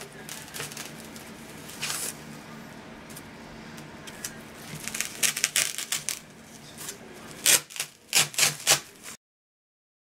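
A PVC pipe being forced down through stacked dry floral foam rounds, making scratchy crunching and crackling. The crackles come in quick clusters about two seconds in, around five seconds, and again near the end, then the sound cuts off suddenly.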